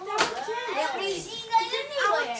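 Children's chatter, with voices overlapping; no words come through clearly.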